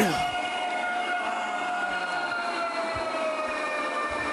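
Model electric train locomotive running on its track, its motor giving a steady whine that sinks slowly in pitch.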